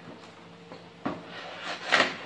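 Cardboard box rubbing and scraping as a large toy claw machine is slid out of it. A knock comes about a second in, and the scraping grows louder toward the end.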